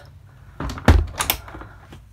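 A dull thump about a second in, just after a rustle and followed by a few light clicks and knocks.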